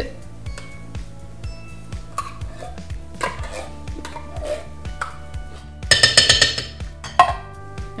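Metal spoon scraping and clinking inside a tin can of condensed soup as it is emptied into a slow cooker, with scattered clicks, a loud rattling scrape about six seconds in and a sharp knock just after. Background music plays underneath.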